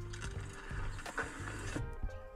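Background music playing under the played-back audio of first-person mountain-bike riding footage: a rushing noise with rattles and clicks from the ride, which cuts off suddenly near the end.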